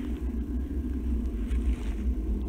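Low, steady rumbling noise on a handheld camera's microphone while it is carried along on foot.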